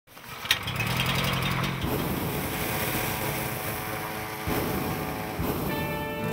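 Small petrol engine running steadily, with a click about half a second in. Music fades in near the end.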